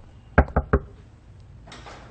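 Three quick knocks of knuckles on a wooden panel door, a little under half a second in.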